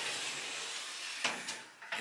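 A steady airy hiss for about the first second, then two short clicks or knocks.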